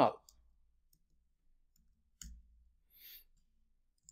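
A few faint, scattered clicks of a computer keyboard as keys are typed.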